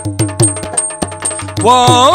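Yakshagana percussion: a chende drum struck with sticks and a maddale barrel drum play quick, even strokes, with small hand cymbals ringing on the beat over a steady drone. A singing voice comes in on a held note near the end, and the music grows louder.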